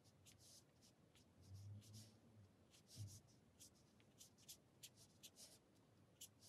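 Faint, quick swishes of a fine-tip watercolour brush dragging short, fairly dry strokes across paper, a dozen or so at an uneven pace, with a couple of soft low bumps about two and three seconds in.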